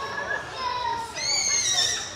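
A child's high-pitched voice calling out, with a held squeal in the second half that falls slightly in pitch, over background chatter.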